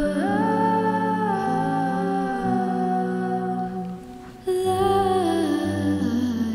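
Pop song outro: a voice humming a slow wordless melody in held, gliding notes over soft low bass notes, with a short dip about four seconds in before the humming resumes.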